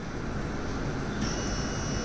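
Electric scissor lift's hydraulic power pack running: a steady mechanical hum, joined a little past halfway by a thin high whine that holds steady.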